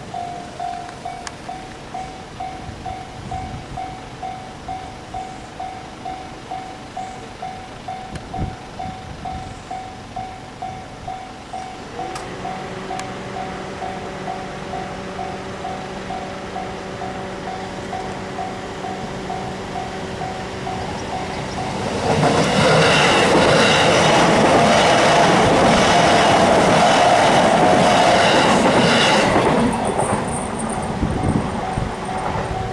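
Japanese level-crossing warning bell ringing at about two strokes a second throughout. A steady hum joins about twelve seconds in, then from about 22 seconds a JR Nambu Line train passes over the crossing loudly for some eight seconds before the noise drops away.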